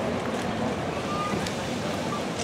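Steady wind rumble on the microphone, with faint voices from the gathered crowd.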